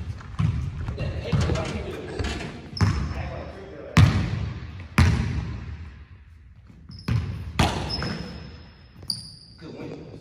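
Basketball bouncing on a hardwood gym floor, each hit echoing in the large hall, the loudest about four, five and seven and a half seconds in. Short high squeaks of sneakers on the floor come in among them, several in the last three seconds.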